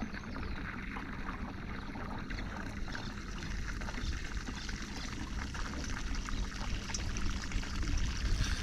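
Water trickling and lapping against the hull of a small boat, a steady low wash.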